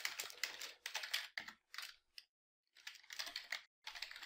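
Typing on a computer keyboard: quick runs of key clicks, broken by a short pause just after the middle.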